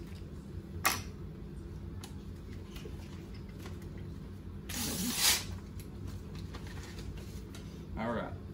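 Paper envelope being handled: a sharp click about a second in, then a short loud rustle of paper about five seconds in, over a low steady room hum.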